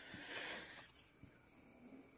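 A faint, soft breath lasting about a second, like an exhale through the nose between sentences, then near silence.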